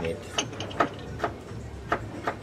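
Regular sharp clicks, about two or three a second.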